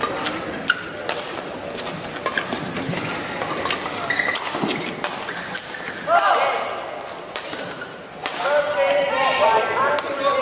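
Badminton rally: a series of sharp racket strikes on the shuttlecock and brief squeaks of court shoes on the floor, then voices calling out about six seconds in and again near the end as the rally finishes.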